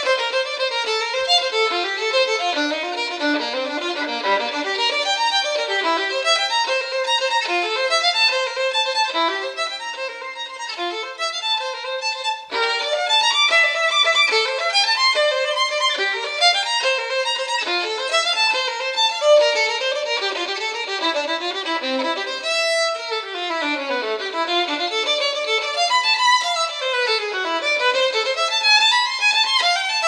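Background music: a violin playing quick runs of notes with nothing lower underneath, with fast descending scales near the end.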